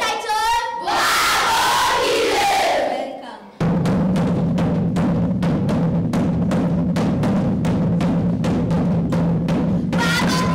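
A single voice calls out, then a group of children shouts and sings together for about two seconds before fading. After a brief lull, a traditional cowhide drum beaten with a stick starts a steady beat of about three strokes a second.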